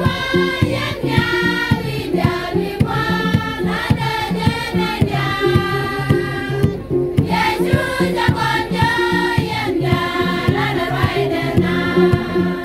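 A choir of women singing a gospel song together over a fast, steady percussion beat.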